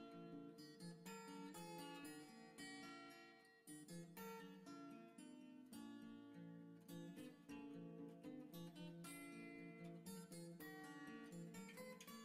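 Quiet background music of plucked acoustic guitar, note after note without pause.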